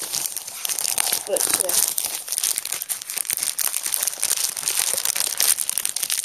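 Plastic wrapping of a comic pack crinkling and crackling continuously as it is handled and pulled open.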